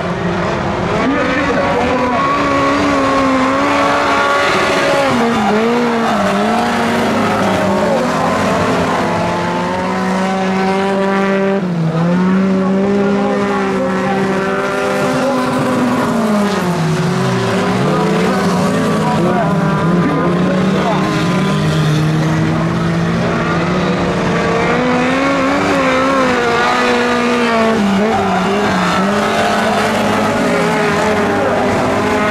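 Several autocross race-car engines revving hard and overlapping as the cars race round a dirt track, their pitch rising and falling with throttle and gear changes. There is one deep drop in engine note about two-thirds of the way through.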